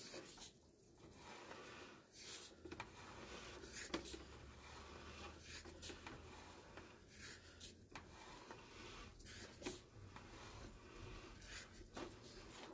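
Faint, irregular rubbing and scraping as a sewer inspection camera's push cable is pulled back through the pipe, a short scrape every second or two.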